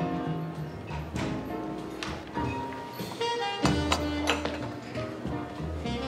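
Background music: held notes over a steady bass line, with a few struck accents.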